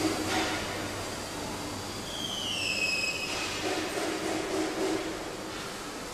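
Laser cutting machine cutting steel plate amid workshop machinery noise: a steady hum and hiss, with a squealing tone that falls in pitch for about a second near the middle.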